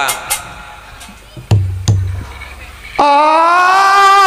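Betawi gambang kromong music: an instrumental phrase ends with a few sharp percussive strikes, then two low drum beats in a quieter gap, and about three seconds in a voice comes in singing a loud, held, wavering line.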